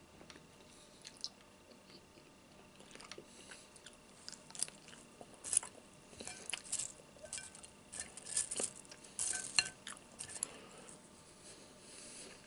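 Crisp bacon being handled and chewed close to the microphone: scattered crackles and crunches, sparse at first and coming thick from about three seconds in.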